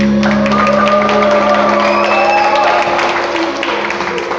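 Audience applause with cheers and shouts as the band's final chord stops, one held note ringing on underneath for most of it.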